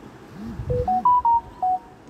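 Amazon app's quiz-completion jingle, a short electronic melody of five beep-like tones that step up in pitch and then back down, over a low swooping sound. It signals that the quiz is finished.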